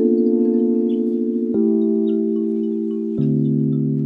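Background music: sustained, chime-like synth chords that change twice, each chord held for about a second and a half.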